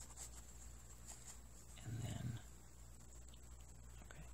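Quiet room with a low steady hum and a few faint ticks of hands working pins into a doll's fabric leg, broken about two seconds in by one short, low vocal sound.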